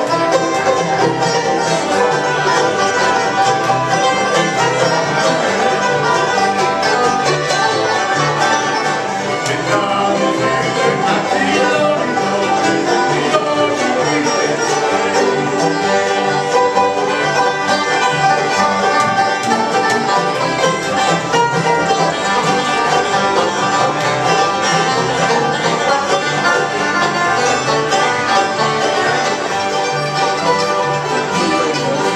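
Acoustic bluegrass band playing together at a steady level: banjo, fiddle, acoustic guitars, mandolin and upright bass.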